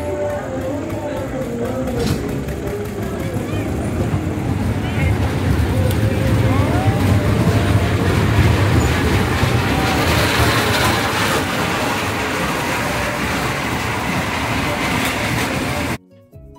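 Amusement-park kiddie train rumbling along its metal track, growing louder as the cars pass close by about eight to ten seconds in, then easing off.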